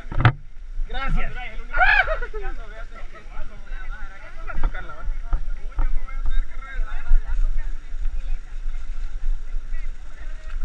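Footsteps splashing and scraping over rocks in a shallow stream of running water, with a sharp knock just after the start. A person calls out briefly about a second in.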